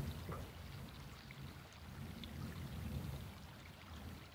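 Faint, low background bed of the meditation track between spoken phrases, swelling slightly about two to three seconds in.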